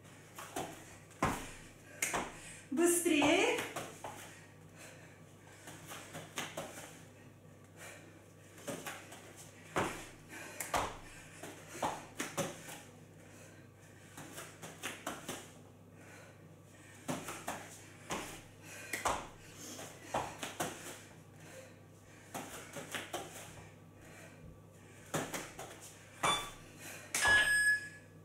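Irregular soft thuds and shuffles of hands and feet landing on a foam exercise mat during repeated burpees with plank and side-plank moves. A short electronic beep comes near the end, the interval timer marking the end of the work period.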